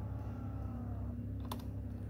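Driver power-seat motor of a 2009 Dodge Grand Caravan running, its faint whine falling slightly in pitch and stopping about a second in, then a single sharp click, over a steady low hum.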